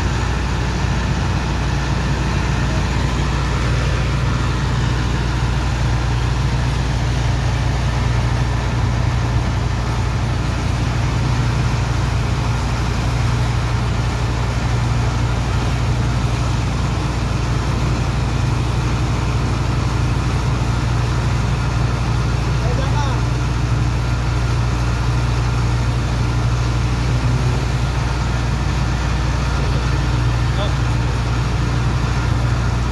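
Engine of a water pump running steadily at a constant speed, a deep unbroken drone, with a steady wash of water-jet noise over it as the hose blasts sand loose in a ship's hold.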